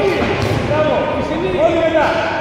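Several people shouting over one another in a reverberant sports hall, calling out to kickboxers in the ring, with a sharp smack about half a second in.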